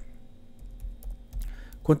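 Typing on a computer keyboard: a short run of light keystrokes as a formula is entered into a spreadsheet cell.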